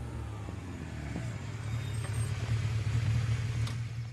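A motor vehicle's low engine rumble and road noise that grows louder towards the end, like a car approaching and passing, then fades.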